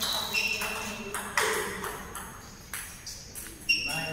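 Table tennis ball being hit by bats and bouncing on the table during a rally: a handful of sharp, ringing clicks at uneven intervals, the loudest about a second and a half in and just before the end.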